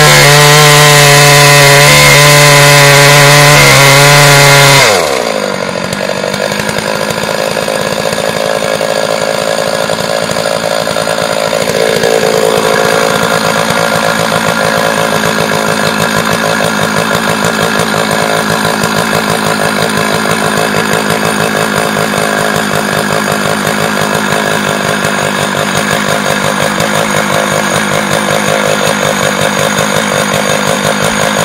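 Stihl chainsaw ripping a log lengthwise into lumber. It runs at high revs for the first five seconds or so, then the engine speed falls sharply and it runs on at a lower, steadier speed with the bar still in the cut.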